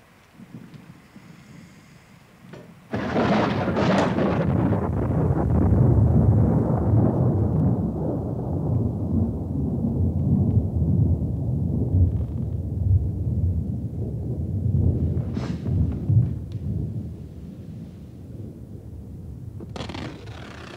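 A thunderclap: a sudden crack about three seconds in, then a long low rumble that slowly dies away.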